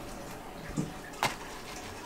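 Faint steady hiss in a kitchen, with a short soft knock and then one sharp click just over a second in, as metal tongs handle a cooked malawax crepe on its way onto a plate.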